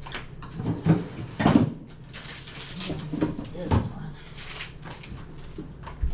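Kitchen handling noises: several knocks and clunks in the first four seconds or so as items are fetched, with a cupboard-like bump among them.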